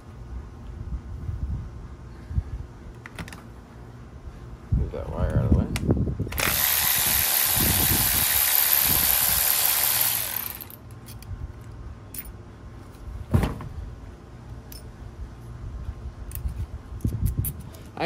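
Cordless battery ratchet running steadily for about four seconds, spinning a small bolt out of a transmission valve body. Clunks of the tool and metal parts being handled come before it, and a single sharp knock comes later.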